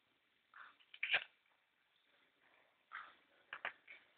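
Water dripping from the roof into puddles inside a tunnel: a few separate drips and plinks, a sharp one about a second in and a quick pair near the end.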